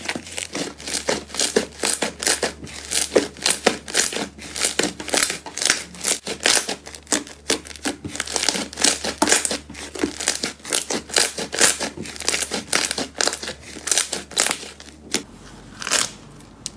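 Pink fluffy slime being stretched, squeezed and kneaded by hand, giving a rapid, irregular run of small sticky pops and crackles that eases off about a second before the end.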